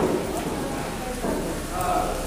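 People talking quietly over a steady hiss of background noise.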